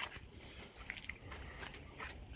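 Faint outdoor background noise with a small click at the start and a few soft ticks about a second in.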